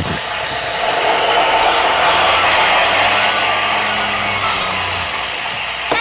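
Theatre audience applauding at the fall of the curtain, a recorded radio-drama sound effect. The clapping swells in within the first second, holds steady and eases off near the end, with a faint low held tone underneath.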